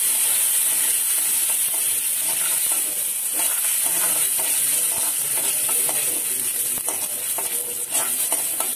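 Hot coconut oil sizzling steadily in a steel kadai as mustard seeds and dals fry for a tempering, with small crackles throughout.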